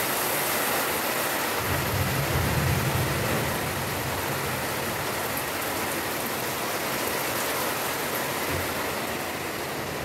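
Heavy rain pouring down in a dense, steady hiss. A low rumble swells and fades between about two and three and a half seconds in.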